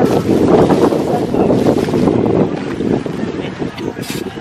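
Wind buffeting an open microphone: a loud, rough rumble that eases off after about three seconds.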